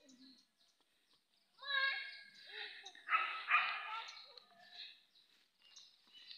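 Faint children's voices: a short call about two seconds in, then a louder burst of voice a second later.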